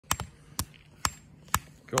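Hand hammer driving wooden stakes into the ground to hold logs of a retaining wall: sharp, separate knocks about every half second, five or six in all.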